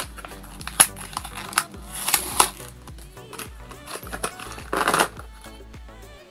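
Background music over several rustles of plastic packaging and small clicks as pens are taken out of a blister pack and laid on a table. The longest rustle comes near the end.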